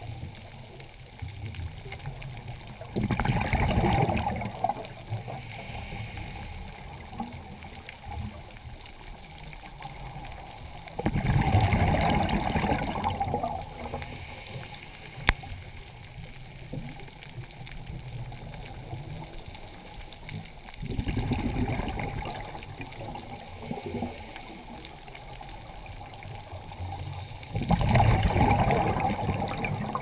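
Scuba diver's breathing heard underwater: four bursts of bubbles from exhaling through the regulator, roughly every eight seconds and each lasting two to three seconds, with a quieter steady hiss between them. A single sharp click comes about halfway through.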